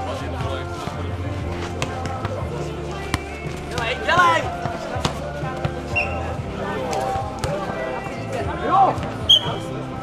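Nohejbal ball being kicked and bouncing on the court in sharp knocks during a rally, over music playing throughout. Players shout about four seconds in and again near the end, just before a short high tone.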